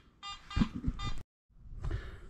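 Metal detector giving two short beeping tones, with a few low knocks in between. The sound cuts off abruptly just past a second in.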